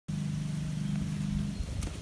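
John Deere riding lawn mower's engine running at a steady speed, turning uneven in the last half second.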